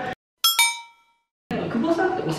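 Bell-like chime sound effect, two quick bright strikes ringing out and fading within about half a second, set between moments of dead silence.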